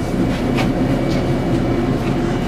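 Steady low mechanical hum of running machinery, with a faint click about half a second in.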